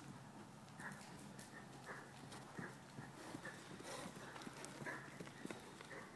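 Faint hoofbeats of a ridden horse moving at a trot or canter, soft muffled strikes on the arena's dirt footing, a few each second.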